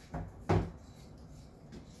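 Two short knocks about a third of a second apart, the second louder: a lamp cord's plug being pushed into a wall outlet.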